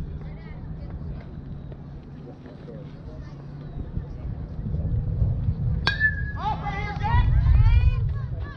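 A metal youth baseball bat hits a pitched ball about six seconds in: a sharp crack with a brief ringing ping. Spectators shout and cheer right after, louder toward the end.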